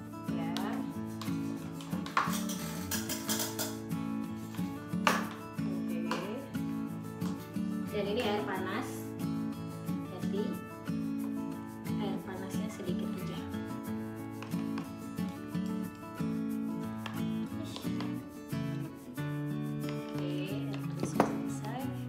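Background music plays throughout, with occasional clicks and scrapes of a spoon against a small plastic bowl as chopped green chillies are stirred and pressed into sweet soy sauce.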